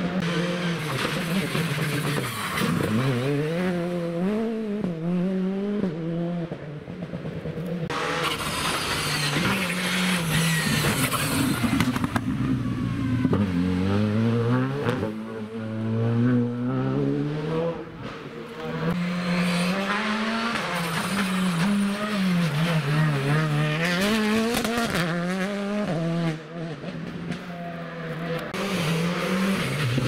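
Rally car engines revving hard. The pitch climbs and falls again and again through gear changes and lifts of the throttle.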